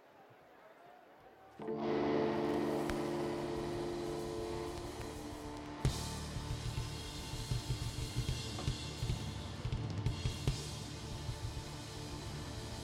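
Live band starting to play: after a quiet moment a held chord comes in about two seconds in. About six seconds in, a drum kit enters on a sharp hit and keeps a driving beat of kick drum, snare and cymbals under the chord.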